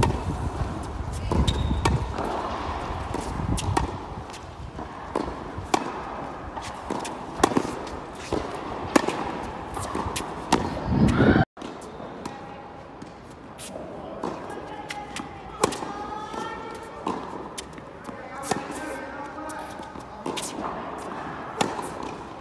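Tennis balls struck by rackets and bouncing on a hard court: sharp pops at irregular intervals, with wind rumble on the microphone in the first half. The sound drops out briefly about eleven seconds in, and after that voices talk in the background between the hits.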